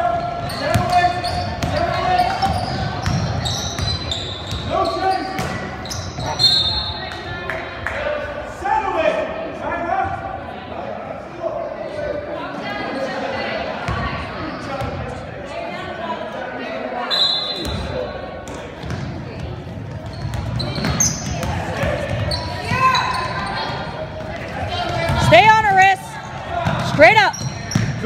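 Basketball game in a gym: a ball bouncing on a hardwood court under the voices of players and spectators calling out. Short high whistle tones come about six and seventeen seconds in, and sharp sneaker squeaks near the end as players scramble for the ball.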